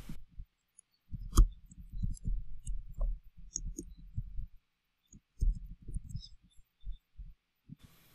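Typing on a computer keyboard: a quick, irregular run of dull key taps, a short pause, then a second, shorter run.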